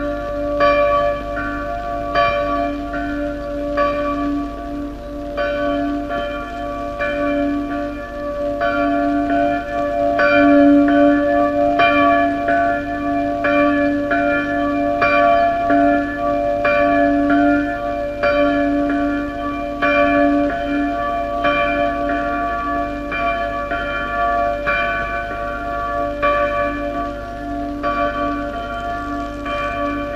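A church bell, the newly consecrated bell, rung in quick repeated strokes, a little more than one a second, over its own steady, lingering hum.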